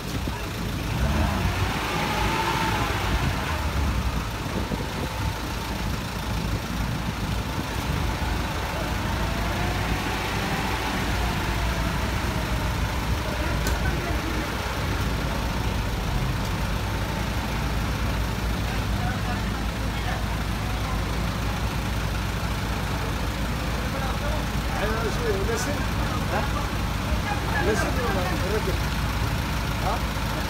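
Flatbed tow truck's engine running steadily while an SUV is loaded onto its bed, with men's voices talking now and then over it.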